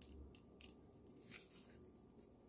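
Scissors cutting a piece of thin cardboard: several faint, sharp snips spread through the moment.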